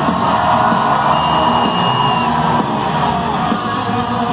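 Live rock band playing loudly with distorted electric guitars and vocals, heard from among the audience, with voices yelling and whooping over the music.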